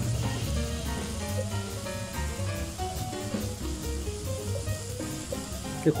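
Background music with a melody of held notes, over a faint sizzle of vegetables frying in sesame oil in a pan.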